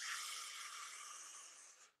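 A man drawing a deep breath: a faint, airy hiss that fades away over about a second and a half.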